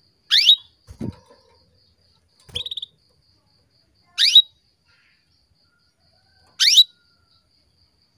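Female domestic canary calling: three short, sharply rising tweets spaced a few seconds apart, with a brief buzzy note between the first two. This is the kind of female call used to stir a male canary into song. Two soft thumps come in the first three seconds.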